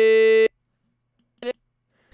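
A held sung vowel note from the vocal track, played back in the Melodyne pitch editor and dead-steady in pitch, cuts off about half a second in. A second short fragment of a sung note sounds briefly near the end.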